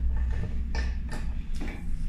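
Metal door latch clicking and scraping a few times as it is pushed into the bored hole of a door panel, over a steady low hum.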